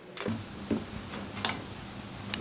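A few sharp, irregular clicks from a pet chipmunk eating pomegranate seeds and moving at close range, over a faint steady hum.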